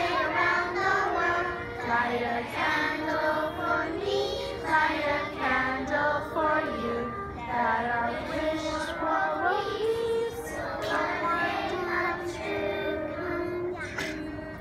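A large group of young children singing a song together in unison, with longer held notes near the end.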